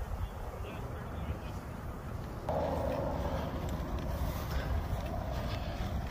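Wind rumbling on a phone microphone outdoors, with a steady, slightly louder noise joining about halfway through.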